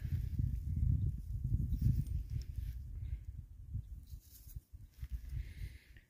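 Low, uneven rumbling noise on the microphone, with no clear events in it.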